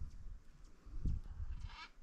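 A distant macaw gives one short call near the end, over a low rumble on the microphone.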